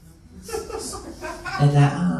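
Chuckling laughter, then a performer's voice saying "hour" near the end.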